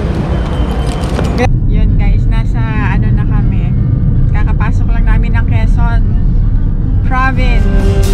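Steady low road and engine rumble inside the cabin of a moving Toyota Vios sedan, after about a second and a half of outdoor wind and traffic noise. A voice comes in over the rumble now and then.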